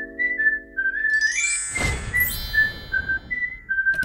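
Channel intro jingle: a whistled melody of short stepping notes over a held chord, with a rising whoosh about two seconds in, then a few last whistled notes.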